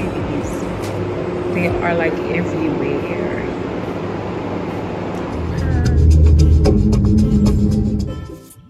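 Indistinct voices over a noisy background, then music with a deep bass comes in about five and a half seconds in and the sound gets louder.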